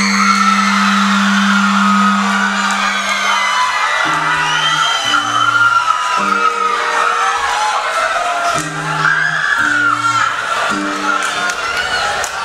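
Live band music starting a song: a long held low note, then a repeating pattern of short low bass notes, with the audience cheering and whooping over it.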